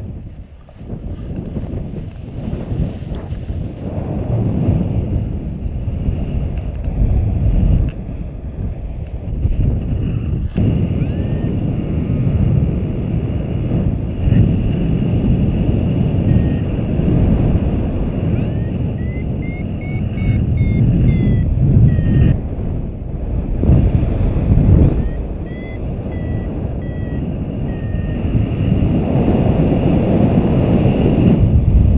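Wind buffeting a harness-mounted camera's microphone in paraglider flight, a loud, uneven low rumble. Faint runs of short high beeps come twice in the second half.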